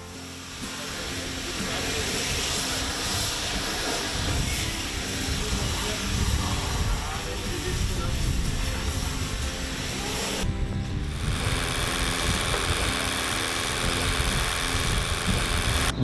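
Cut-together farm work sounds with background music: a tractor running, a pressure hose spraying water onto a cow with a steady hiss, then, after a sudden change about ten seconds in, electric cattle clippers buzzing.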